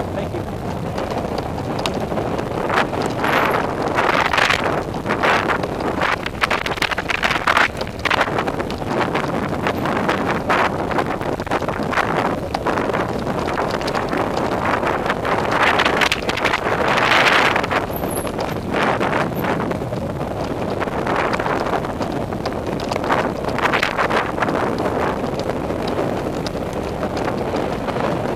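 Mountain bike ridden fast down a dirt singletrack, heard from a camera on the bike or rider: steady wind buffeting on the microphone over tyre rumble and the rattle of the bike over rocks and roots. The wind noise swells now and then.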